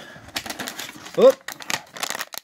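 Packaging rustling and crinkling in quick clicky bursts as hands rummage through a gift box and pull out a bag of dog treats.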